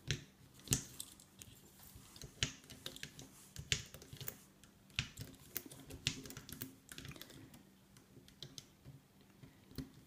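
Irregular light clicks and taps of fingers working rubber bands off the clear plastic pegs of a rubber-band loom, thinning out near the end.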